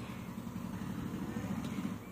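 Steady low background rumble with no distinct clicks or tones.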